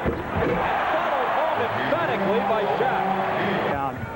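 Basketball arena crowd noise: a loud, dense din of many voices, with individual shouts rising and falling through it. It cuts off abruptly near the end.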